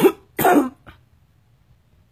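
A woman coughing twice in quick succession, with a faint short third cough about a second in.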